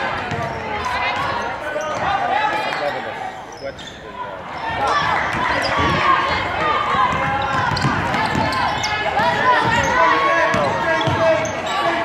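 A basketball dribbled on a hardwood gym floor, its bounces thudding under a steady hubbub of crowd voices and shouts in the gym, with a brief lull a few seconds in.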